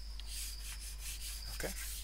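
Stylus rubbing and scraping across a tablet screen while handwritten annotations are erased, a soft, hissy rubbing sound over a steady low electrical hum.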